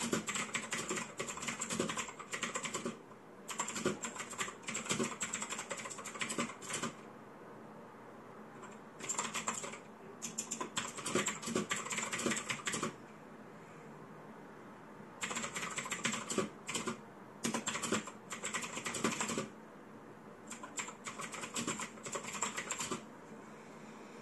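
Fast typing on a mechanical keyboard: runs of rapid key clicks, several seconds each, broken by short pauses, and stopping shortly before the end.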